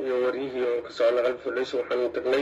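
A woman's voice talking continuously in a drawn-out, held delivery with brief pauses.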